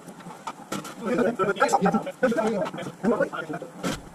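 A man's voice talking indistinctly, with a single sharp knock just before the end.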